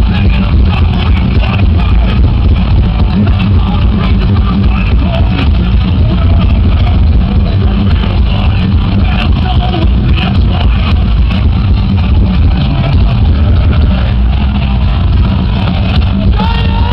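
Thrash metal band playing live, with distorted electric guitars, bass and fast drums in a loud, continuous instrumental stretch. Heard from within the crowd.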